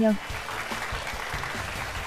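Studio audience applauding, a steady patter of clapping.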